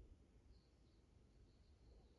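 Near silence: faint outdoor quiet with a small bird's thin, high chirping that starts about half a second in and comes in short broken bits.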